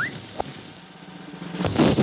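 Cartoon sound effects: a drum roll building up through the second half, ending in a toy cannon firing near the end.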